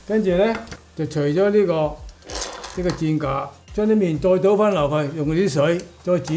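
A man speaking Cantonese in short phrases.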